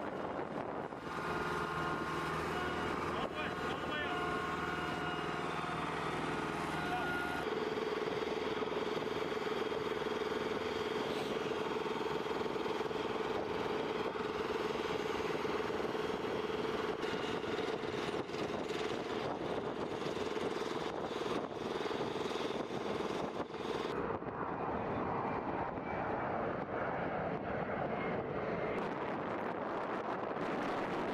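Steady drone of flight-line machinery and engines, with a constant mid-pitched whine that settles in about seven seconds in; the higher hiss drops away about three quarters of the way through.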